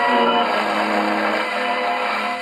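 Instrumental passage of a Romanian song played from a 78 rpm shellac record on a hand-cranked portable gramophone, sounding through its acoustic reproducer.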